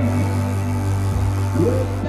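Live amplified music from electric guitar and band: a held chord over a steady low bass note, with a short sung phrase near the end.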